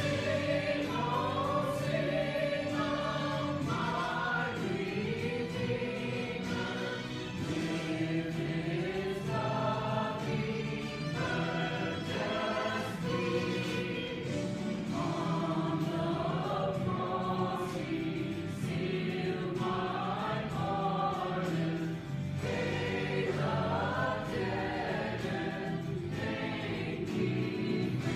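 Mixed church choir of men and women singing a sacred anthem together, with steady sustained low notes beneath the voices.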